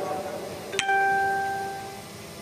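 A single bell-like ring, struck sharply about a second in and dying away over the following second.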